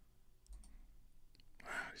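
Near-quiet pause with a few faint, short clicks, then a soft breath near the end.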